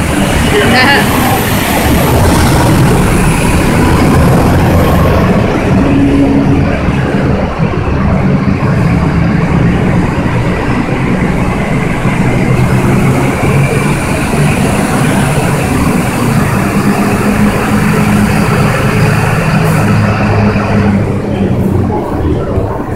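Vans and lorries driving onto a roll-on/roll-off ferry's vehicle deck, their engines making a loud, steady low rumble.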